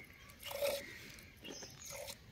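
Hand-milking a goat: milk squirts from the teat into a small steel bowl, a short hissing squirt about half a second in and another at the end.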